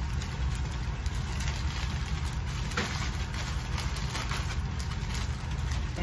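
A steady low hum runs throughout, with light rustling and handling noises as packaged items are put away and picked up.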